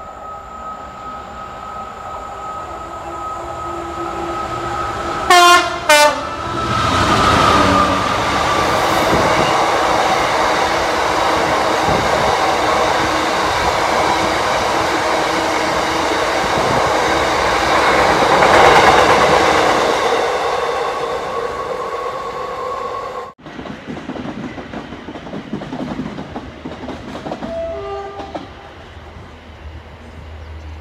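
Freight train horn sounding two short blasts about five seconds in, then the train running through at speed, a long rake of box wagons rumbling and clattering past on the rails, loudest near nineteen seconds. The sound cuts off suddenly near the end, leaving a quieter hum.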